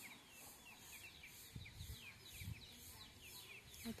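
Faint rural yard ambience: small birds giving repeated short, falling chirps, over a faint high-pitched insect buzz that pulses about twice a second. A couple of low muffled bumps come near the middle.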